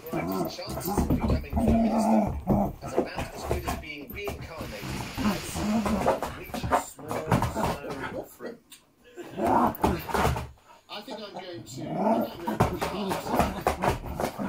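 A dog growling in play as it tussles with a chew treat and paws and digs at a rug, with television voices talking underneath.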